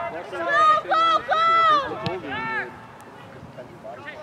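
Several people shouting short, high calls across a soccer field, loud in the first half, with one sharp knock about two seconds in; then it falls quieter.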